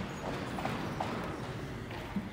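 A few light knocks about half a second and a second in, over steady room noise: items being handled on a church altar.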